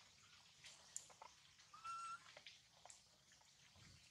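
Near silence with faint scattered clicks, broken about two seconds in by one short, steady, whistle-like animal call.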